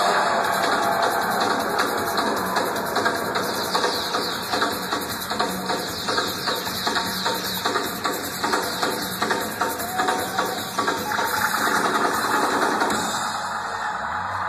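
Live reggae band playing an instrumental stretch of the song, with drums keeping a steady beat under electric guitar and keyboard.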